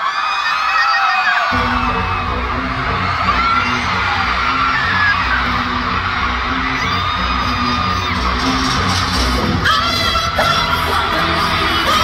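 A K-pop song played loud over an arena sound system, its heavy bass beat coming in suddenly about a second and a half in, with a crowd of fans screaming throughout.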